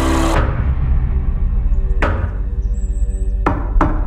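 Low, sustained trailer music drone with heavy knocks on a wooden door: one knock about halfway through, then two close together near the end.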